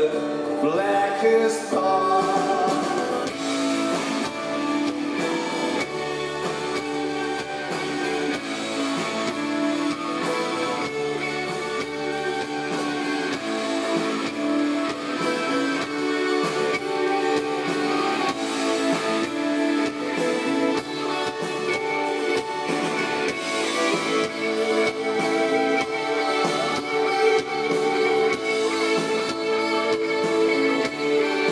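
A live rock band playing a long passage without words, with electric guitar over sustained notes.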